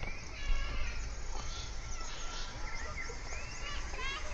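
Recorded woodland wildlife sounds played over outdoor loudspeakers: short, high chirping and whistling calls, several in quick succession. A low rumble runs underneath.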